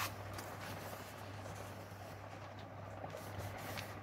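Faint rustling and creasing of a kraft paper envelope being folded by hand, over a steady low electrical hum.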